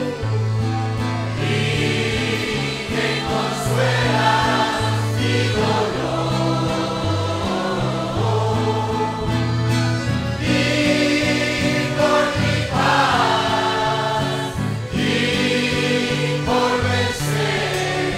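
A church congregation singing a worship song together, with instrumental accompaniment and a bass line that moves from note to note.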